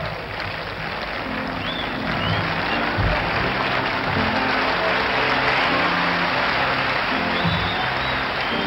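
Audience applauding steadily, swelling a little after about two seconds, over music with sustained low notes.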